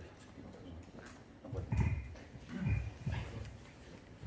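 Faint, muffled voices talking off-microphone in a few short phrases, starting about one and a half seconds in, over quiet room noise.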